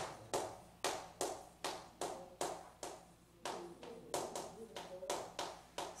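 Chalk writing on a blackboard: a quick series of sharp taps and short scratches, about two or three a second, as Korean characters are written out.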